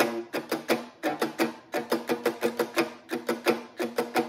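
Three-string cigar box guitar played on its own: a quick, even rhythm of plucked notes.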